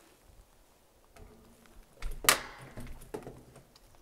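Lever handle and latch of a steel door being tried: a sharp metallic clack about two seconds in, then a few lighter clicks and rattles. The door stays shut.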